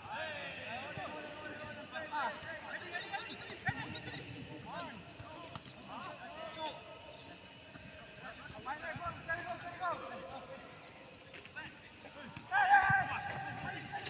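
Footballers shouting and calling to each other during a training game, with a few sharp knocks of the ball being played. The loudest shout comes near the end.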